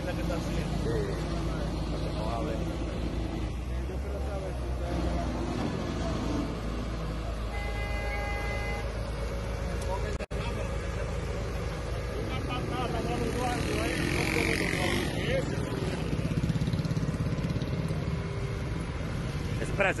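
Street traffic: vehicle engines running steadily with a low rumble, voices in the background, and a short horn blast about eight seconds in.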